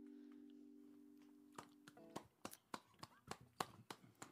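The last chord of an acoustic guitar ringing out and fading away, followed by a series of faint, irregular clicks from about one and a half seconds in.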